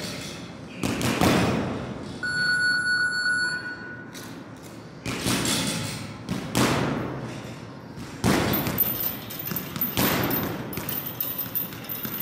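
Boxing gloves striking punching bags: several heavy thuds at irregular gaps of a second or more, each echoing in the bare room. About two seconds in, a steady electronic beep sounds for about a second and a half.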